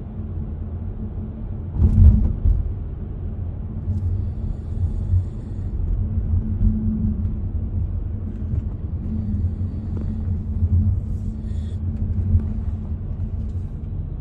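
Low, steady road rumble of a moving car heard inside the cabin, from its tyres and engine at motorway speed. There is one louder thump about two seconds in.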